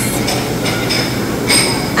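Busy buffet dining room din: steady crowd chatter and clatter, with ringing clinks of dishes and serving utensils and one sharper clink about one and a half seconds in.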